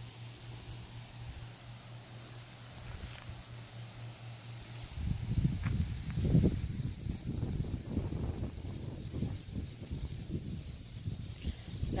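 A faint steady low hum, then from about five seconds in, wind gusting against the microphone in uneven low rumbles.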